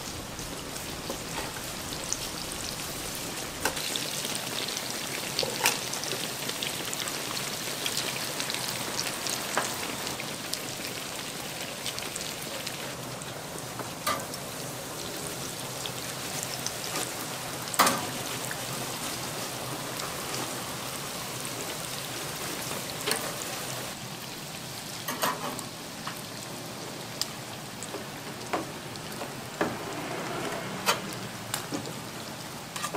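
Breaded croquettes deep-frying in a vat of hot oil: a steady, crackling sizzle throughout, with occasional sharp clicks and knocks, the loudest just past halfway.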